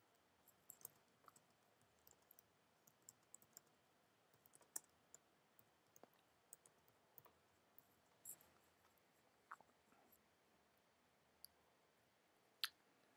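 Faint computer keyboard keystrokes typing a line of text, in irregular runs of clicks with short pauses between them.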